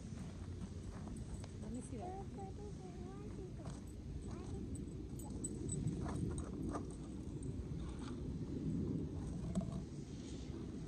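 Footsteps shuffling over wood-chip mulch and a small hand garden fork scraping it: soft, irregular crunches and knocks.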